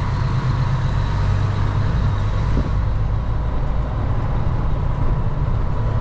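Cab noise of a Western Star semi-truck on the move: its diesel engine drones steadily at low pitch under a fainter even rush of road noise, heard from inside the cab.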